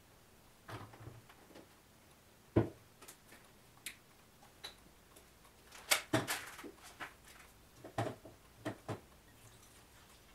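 Scattered clicks and knocks of plastic bottles, caps and a funnel being handled on a workbench, with one louder thump about two and a half seconds in. A crinkly rustle of a plastic bag comes around six seconds in.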